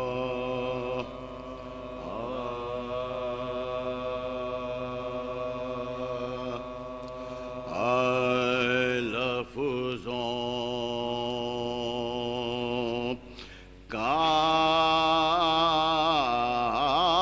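Unaccompanied male voices chanting soz in long, steadily held notes, sliding in pitch at each change of note. The voices grow louder about halfway through, break off briefly near the end, then return louder.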